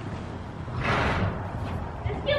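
Muffled hoofbeats of a horse cantering on the soft sand footing of an indoor arena, with a short rush of noise about halfway through.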